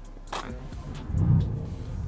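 BMW F80 M3's twin-turbo S55 inline-six starting up, heard from inside the cabin: a low rumble that swells to a peak about a second in, then settles to a steady idle.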